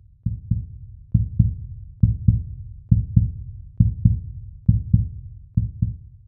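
Low heartbeat-like double thumps, a lub-dub pair about every nine-tenths of a second, played as an outro beat.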